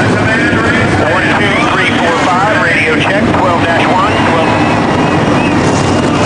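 NASCAR stock car V8 engines running, loud and steady, with voices talking over them.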